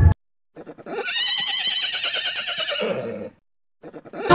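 A horse whinnying once: one quavering call of nearly three seconds that drops lower in pitch at the end.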